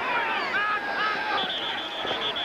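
Stadium crowd and shouting voices, then a referee's pea whistle trilling from about one and a half seconds in, blown to stop play for a false start.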